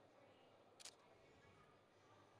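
A camera shutter firing once: a brief, quiet double click, taking the posed portrait.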